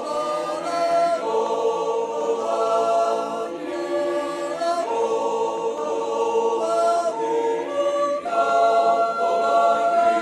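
Background music: a choir singing slow, held chords that shift about once a second.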